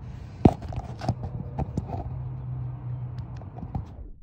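Handling noise from a phone being moved around: irregular light clicks and knocks, one sharp click about half a second in, over a low steady hum.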